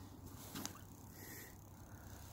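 Very faint background hiss, with one brief soft click about a third of the way in.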